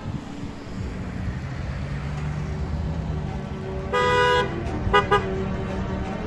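Car horn honking: one half-second honk about four seconds in, then two quick short toots, over the low rumble of cars passing.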